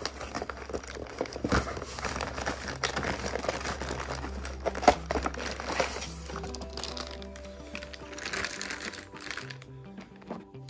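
Plastic bag crinkling and cardboard rustling as a hand pulls a bagged RC transmitter out of its box, with one sharp crackle about five seconds in. Background music with stepping notes plays underneath, clearer near the end as the handling dies down.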